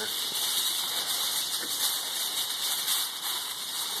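A sheet of aluminium foil crinkling and rustling as it is held and handled, over a steady hiss.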